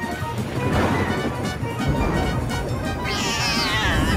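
Cartoon soundtrack music; a deep rumble joins in about halfway. Near the end a cat's yowl falls steeply in pitch over under a second.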